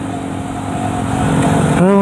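Motorcycle running at road speed, heard from the rider's own bike, with a steady rush of wind and road noise over the microphone.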